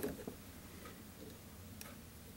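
Faint small clicks and ticks of hands handling the thread and materials at a fly-tying vise: a short cluster right at the start, then a couple of isolated ticks over a low room hum.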